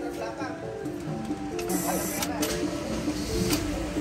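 A Honda CR-V's starter motor briefly cranking the engine, which catches and settles into idle, under loud background music. The starter now turns the engine over after its solenoid switch was replaced, curing the click-only no-start.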